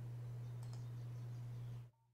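Faint computer mouse clicks over a steady low hum, which cuts off abruptly to silence just before the end.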